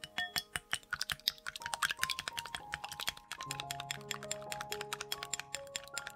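Egg being beaten in a glass bowl, the utensil clicking rapidly against the glass, several clicks a second, over background music with sustained melodic notes.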